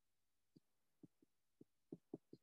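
Faint marker strokes on a whiteboard while letters are written: about five short, soft, irregular taps.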